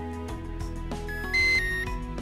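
Traxxas Aton drone transmitter playing its return-to-home tone: three short electronic beeps in quick succession at different pitches, signalling that the drone is flying back to its home point. Background music plays throughout.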